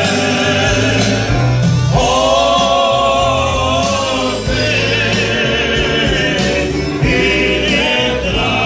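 Several male voices singing a Croatian folk song together over a live band with accordion, holding long notes with vibrato from about two seconds in.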